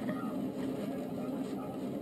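Roller coaster train running along its steel track, heard through a television's speaker: a steady rumble.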